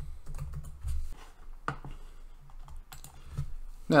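Typing on a computer keyboard: irregular key clicks with short pauses between them.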